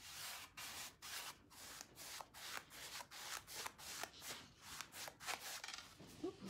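A paintbrush stroking polyurethane onto a rusty metal milk can: faint, short brushing strokes repeating about three times a second.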